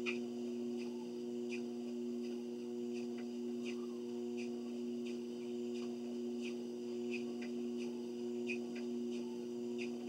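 Treadmill running with a steady motor hum, with light ticks from the walking belt recurring about every three quarters of a second, the pace of walking steps.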